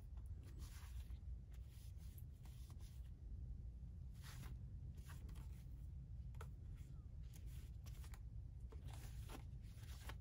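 Paper towel rubbing and rustling against a calculator's plastic case in short, faint, uneven strokes over a steady low hum.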